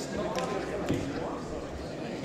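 Many people talking among themselves at once in a large, echoing chamber, a general murmur of conversation. Two sharp knocks cut through it, about half a second and a second in, the second the louder.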